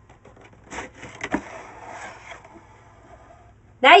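Cardboard box being opened by hand: a couple of sharp knocks and scrapes about a second in, then rustling of cardboard and paper packing that fades out.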